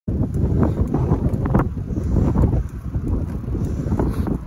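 Strong wind buffeting the microphone of a camera held on a moving bicycle: a loud, gusty rumble that eases briefly a little before three seconds.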